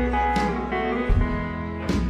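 Country band playing an instrumental bar between sung lines: pedal steel guitar with electric and acoustic guitars, upright bass and drums, with drum hits about half a second in and again near the end.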